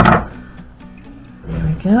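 A single sharp knock as the wooden back panel of a vintage Panasonic RS-853 8-track player pops loose from its case, followed by quiet handling.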